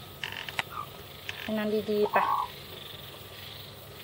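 A person's voice speaking softly in Thai, coaxing ("ไปนอนดีๆ", "go to sleep nicely"), about one and a half seconds in. Light clicks and rustles are scattered through the rest.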